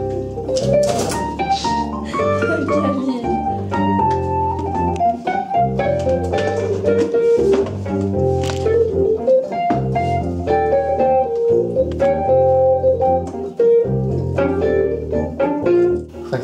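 Keyboard music with an organ sound: a bass line stepping from note to note under a moving melody.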